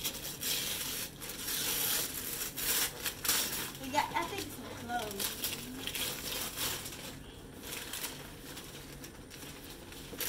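Gift wrapping paper being torn and crumpled off a box by hand, in a run of irregular rips and rustles.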